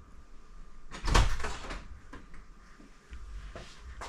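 A boat propeller on its shaft being turned by hand on a static balancing stand to check its balance: a knock about a second in with a short rattle as it rolls, then a few faint clicks as it settles.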